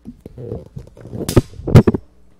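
Microphone handling noise as a microphone stand is adjusted: low rumbling and bumping, then two sharp clunks about half a second apart near the end, the second the loudest.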